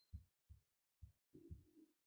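Near silence, broken by four faint, short low thumps about half a second apart.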